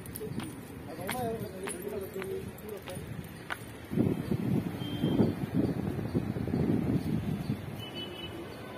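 Footsteps ticking on a dirt path, with a person's voice in the background. About halfway through, a louder, rough low noise takes over for a few seconds.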